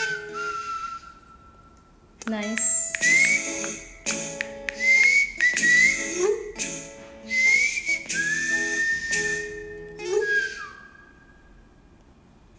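Background music: a whistled melody in short repeated phrases, its notes sliding up at the ends, over a chordal accompaniment. The music dips briefly just after the start and fades away near the end.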